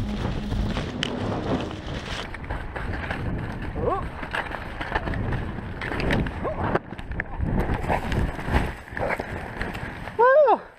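Skis sliding and scraping over snow at speed with wind rushing over a chest-mounted action camera's microphone, plus a couple of short voice sounds that fall in pitch, around four and six and a half seconds in.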